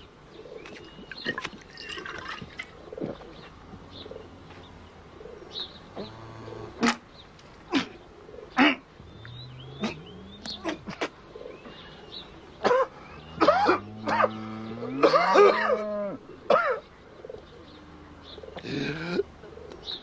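Birds chirping in the background, with scattered sharp knocks and clinks. Several long pitched calls rise in pitch, once about nine seconds in and again around thirteen to sixteen seconds.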